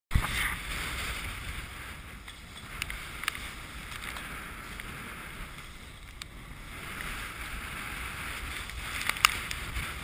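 Wind buffeting the microphone and water rushing and splashing past the hull of a heeled sailboat driving through choppy water. A few sharp knocks sound through it, the loudest near the end.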